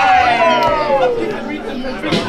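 Voices call out in one long, falling tone while the hip hop beat drops out.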